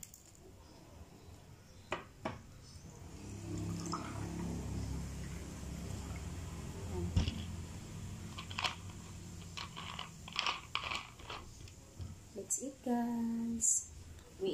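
Mountain Dew poured from a bottle into a glass of ice, a steady pour of about four seconds ending with a knock, followed by a few light clicks and taps.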